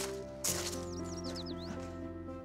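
Background music of sustained, gently shifting chords, with a quick run of about six short high chirps near the middle.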